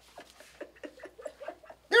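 A boy imitating a chicken: a quick run of soft, short clucks, several a second.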